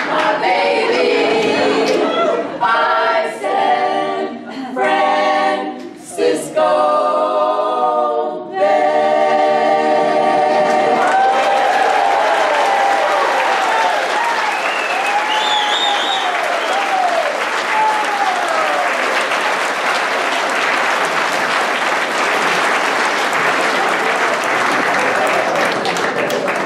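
A women's vocal group singing the last held notes of a blues song in harmony, ending about eight seconds in. The audience then breaks into steady applause with a few cheers and whoops.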